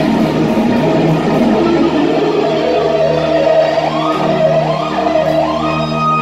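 Electric guitar lead played with a band: sustained notes with upward string bends, settling into a long held high note near the end.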